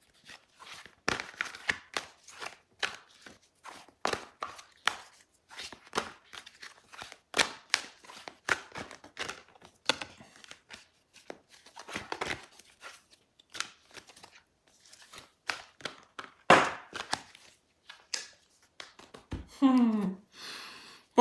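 A deck of angel guidance cards being shuffled and handled: irregular soft card slaps and scrapes, a few a second, with brief pauses.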